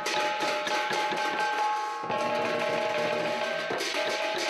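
Lion dance percussion: a large lion drum and brass hand cymbals played together in a fast, continuous beat, the cymbals ringing on between strikes. There is an abrupt break in the sound about halfway through.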